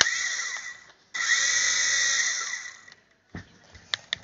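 Toy remote-control helicopter's small electric rotor motors whining in two spells: a short one of about a second, then a longer one of about two seconds that fades out. A few light clicks follow near the end.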